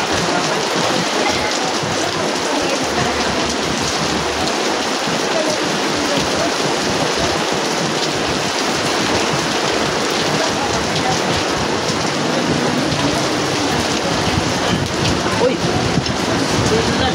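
Steady heavy rain, a dense even hiss that holds at one level throughout.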